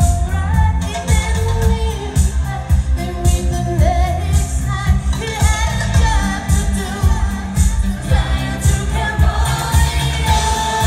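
Live pop band with a female lead vocal singing a melody over a steady, heavy kick-drum and bass beat, heard from within the audience in a concert hall.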